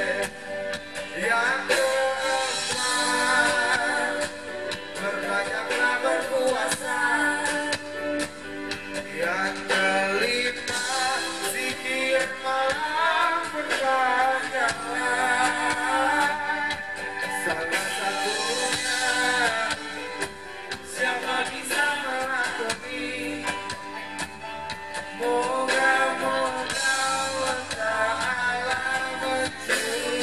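A live band playing a song, with male and female singers over an electric guitar and keyboard.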